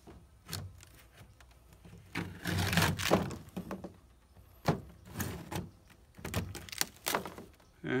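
A metal scraper scraping old beeswax comb off a wooden beehive frame: a longer rasping scrape about two to three seconds in, with sharp clicks and knocks of the blade against the frame's wood scattered through the rest.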